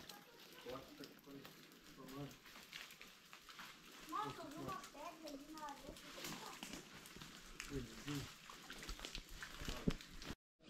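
Indistinct voices talking, clearest from about four to six seconds in and again near eight seconds, over faint crunching footsteps on dry leaf litter.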